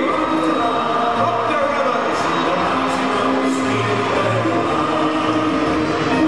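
Brass band music, with a group of voices singing in chorus.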